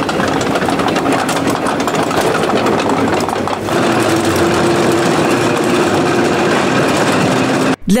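Engine of a restored WWII tracked self-propelled gun running, with a steady engine note over a dense clatter. The sound dips briefly and shifts a little after three and a half seconds.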